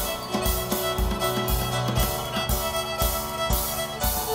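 Live contra dance band playing a reel: fiddle leading over keyboard and percussion, with a steady beat of about two thumps a second.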